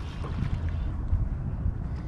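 Wind rumbling on the microphone, with light splashing from a hooked lizardfish thrashing at the water's surface.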